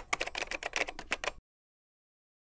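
Typing sound effect: a rapid run of key clicks, several a second, that stops abruptly about one and a half seconds in.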